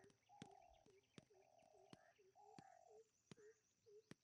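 Near silence with a very faint night-time ambience: small calls repeating about three times a second, longer buzzy pulses about once a second, and scattered clicks.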